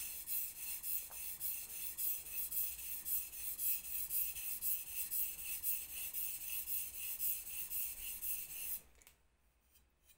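Steel blade of a single-bevel knife stroked back and forth on a wet whetstone, right (bevel) side down and lightly pressed: a quick, even rhythm of rasping strokes, about three a second, that stops about nine seconds in.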